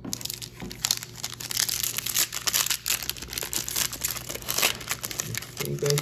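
Foil trading-card pack wrapper crinkling and crackling as hands tear it open, a dense run of crackles.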